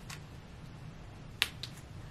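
A sharp click about one and a half seconds in, followed closely by a fainter one: a crop top's small metal clips snapping shut onto the waistband of denim jeans.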